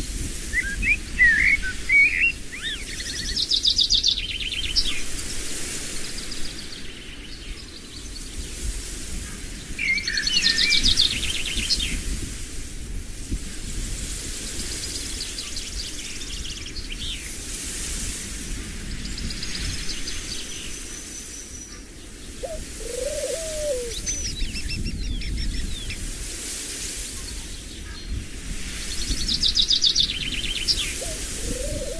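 Birdsong: songbirds chirping and trilling in short high phrases that recur every several seconds over a steady low background hum, with one lower call about two-thirds of the way through.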